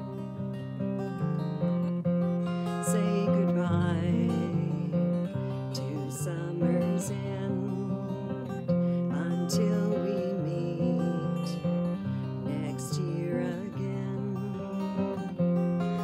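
Acoustic guitar with a capo playing chords in an instrumental passage between sung lines of a song.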